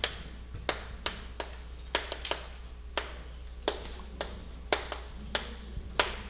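Chalk on a chalkboard while characters are written: about a dozen sharp, irregular taps as each stroke strikes the board, over a steady low hum.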